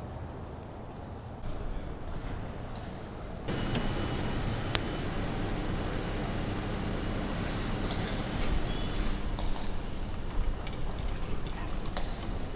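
Open-air crowd ambience on cobblestones: footsteps and irregular knocking over a low murmur of voices, with a sharp click about five seconds in.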